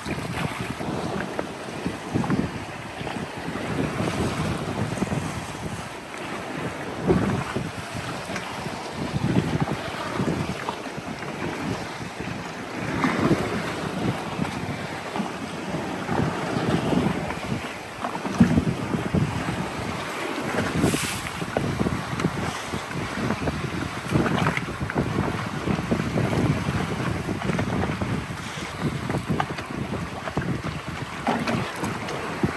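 Wind buffeting the microphone over water sloshing and paddle splashes from a sit-on-top kayak being paddled close to a rock face, with small waves washing against the rock. The noise comes and goes irregularly, with no steady tone.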